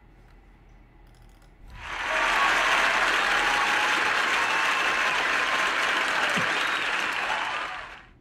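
Crowd applause with many hands clapping. It fades in about two seconds in, holds steady, and fades out just before the end.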